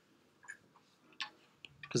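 A few faint, separate taps of a stylus tip on an iPad's glass screen.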